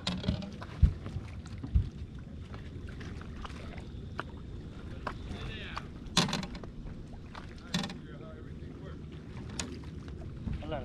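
Knocks and thumps on a bass boat's deck: two loud dull thumps about a second apart near the start, then two sharper knocks later on, over a steady low background.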